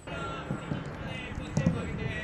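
Footballs being kicked on a grass pitch during a team warm-up, with dull thuds about half a second in and again near the end, over players' voices calling out.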